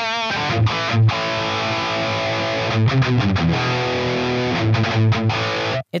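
Electric guitar played through a Line 6 Helix, with the AcouFiend feedback plugin bypassed so no generated feedback is added. It plays a few seconds of held notes with some low accents and stops suddenly just before the end.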